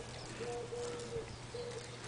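Dove cooing: a series of short, low, even hooting notes, repeated with brief gaps, over a faint steady low hum.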